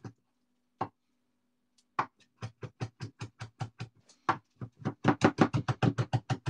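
Kitchen knife chopping fresh parsley and coriander on a wooden chopping board. One chop comes about a second in, then a steady run of quick chops from two seconds in, about five or six a second, growing louder near the end.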